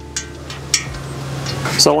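Ratchet and socket snugging a steel main stud hand-tight into an RB26 engine block: a couple of light, sharp metallic clicks.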